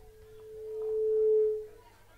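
Microphone feedback through a PA system: one steady ringing tone that swells louder and then dies away a little before the end.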